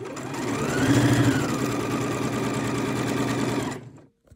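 Necchi 102D electric sewing machine stitching: the motor speeds up in the first second with a rising whine that then eases to a steady run, and it stops near the end.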